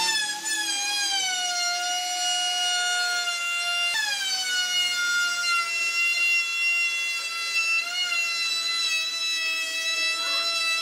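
Electric router's motor running with a high-pitched whine as its bit cuts a moulded profile along the edge of a wooden cabinet top. The pitch sags as the bit takes load, jumps back up about four seconds in, then sags again.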